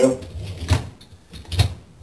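Dishwasher's wire top rack knocking and rattling on its rails twice as it is pushed back into place on its wheels.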